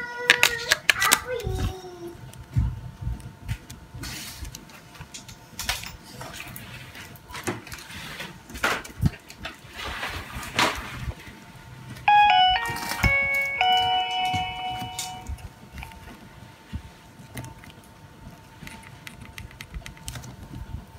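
Clicks and rattles of a Nokia 3100 mobile phone being handled, then about twelve seconds in the phone plays a short electronic melody as it powers on: a run of quick beeping notes and then a few held tones.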